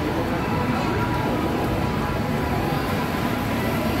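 Steady rumble of a trackless kiddie ride train rolling along a tiled mall floor, with faint voices in the background.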